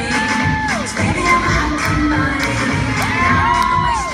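An audience cheering and shouting over loud dance music with a steady beat, with long whoops near the start and again near the end.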